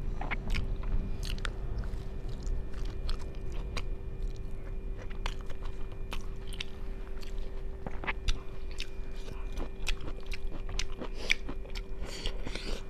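Close-miked chewing and biting of a person eating rice and vegetables by hand, with frequent irregular wet clicks and crunches from the mouth, over a faint steady electrical hum.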